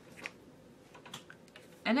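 A few faint, light clicks against quiet room tone, then a woman's voice begins near the end.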